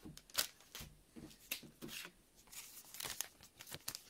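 Thin plastic and foil trading-card packaging handled by hand: a string of short, quiet, irregular crinkles and rustles.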